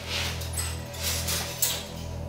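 Low, steady background music drone with a few short, soft rustling noises.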